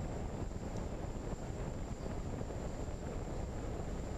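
Steady wind rushing over the microphone of a gliding fixed-wing RC plane's onboard camera, with a faint, high, steady whine under it.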